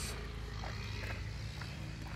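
Quiet outdoor background with a low steady rumble and two faint footsteps on gravel, about a second apart.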